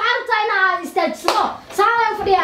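A couple of sharp hand claps about a second in, amid a woman's speech.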